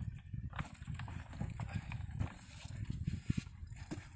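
Rustling and scattered light clicks and knocks as a dog's tether is clipped on and a man climbs onto the ATV, over a low uneven rumble.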